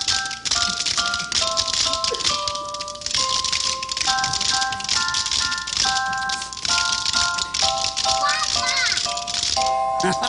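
A band plays a bright tune in chords while children shake small hand bells along with it, a constant jangle over the melody. Near the end a few quick warbling glides join in.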